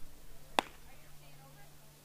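A single sharp crack of ball play on a baseball field, about half a second in, over faint distant voices and a steady low hum.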